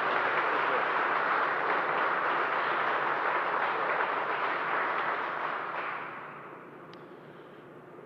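A small audience applauding, the clapping fading away about six seconds in.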